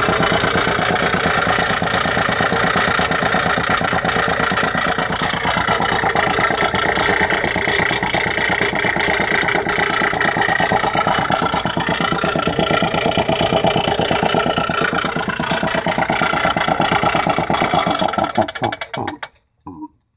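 An old piston air compressor running steadily, a fast even chugging of pump strokes with a steady high whine over it, which stops near the end.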